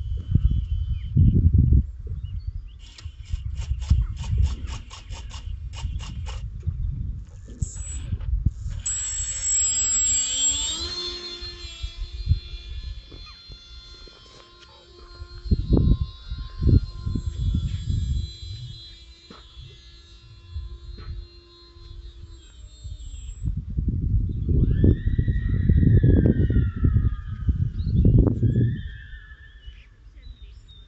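Small brushless electric motor and three-bladed propeller of an RC model plane spooling up with a steeply rising whine about nine seconds in, then holding a steady high whine until it cuts out a little over halfway through. Heavy wind rumble on the microphone runs under it throughout.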